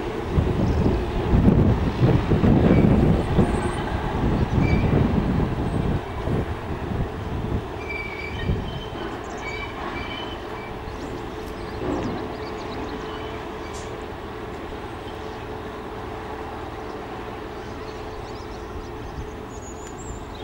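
Irish Rail 121 class diesel locomotive running with its train. Its engine drone and rumble are loud for the first several seconds, then fade to a steady, quieter drone as it moves away.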